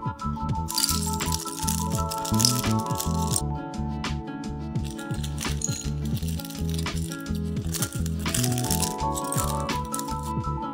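Loose LEGO bricks rattling and clattering as they are shaken out of a plastic bag onto a tabletop and spread by hand, over background music. The rattling comes in two spells, one early and one near the end.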